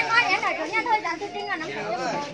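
Chatter: several women's voices talking over one another, lively and high-pitched, with no single clear speaker.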